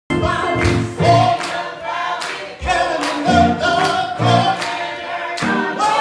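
Gospel music: a group of voices singing together over instrumental accompaniment.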